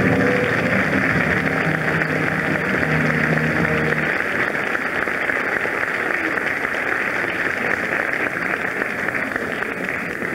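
Audience applauding steadily in a theatre, a dense crackling clatter of many hands. For about the first four seconds the orchestra's final low chord is still held beneath it, then cuts off.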